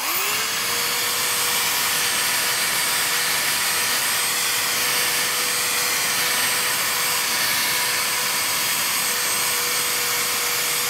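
Corded electric drill spinning a purple foam polishing pad with rubbing compound against a car's painted door: a steady whine over a hiss. The drill speeds back up to full pitch right at the start, then runs evenly. This is the rubbing-compound step that buffs away the haze left by sanding out clear-coat scratches.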